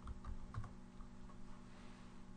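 Computer keyboard being typed on: a quick run of keystrokes in the first second, then a couple of fainter key clicks, over a steady low hum.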